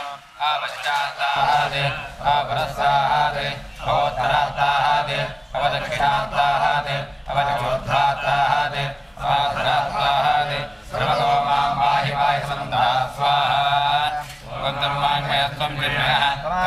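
Male priests chanting Sanskrit mantras of a Ganapati homa. The recitation runs phrase after phrase, each about two seconds long, with short breaks between them for breath.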